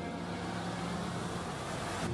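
Slow, sad background music with sustained notes, mixed with a steady wash of hiss-like noise.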